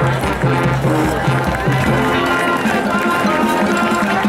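High school marching band playing: brass and percussion sounding held chords over a low bass line.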